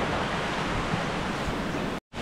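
Shallow stream water splashing and rushing as feet wade through a rocky water crossing, a steady noisy wash.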